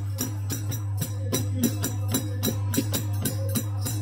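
Traditional village Holi folk percussion: a hand drum and metal hand cymbals keep a fast, even beat of about four to five strokes a second, over a steady low hum.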